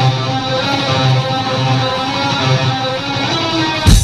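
Live electric guitar playing the opening riff of a doom-death metal song alone through the PA, with a slow pulsing low note under ringing chords. Just before the end the full band comes in with a loud hit of drums and bass.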